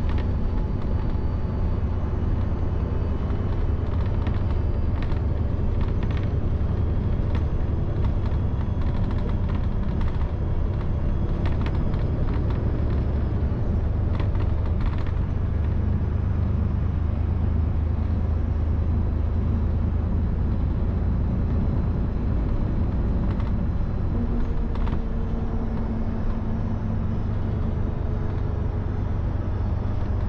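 Inside a moving city bus: a steady low rumble of engine and road, with scattered rattles through the first half. About four-fifths of the way through, a steady hum joins in for a few seconds.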